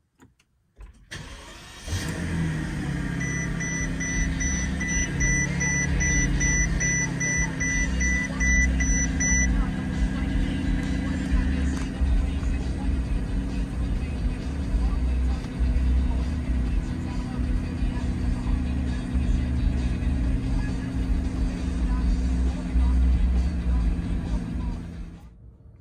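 The 2007 Mercedes-Benz S600's twin-turbo V12 cold-starting, heard from inside the cabin: it fires about a second in and settles into a steady idle. A car warning chime beeps about twice a second for the first six seconds or so after the start.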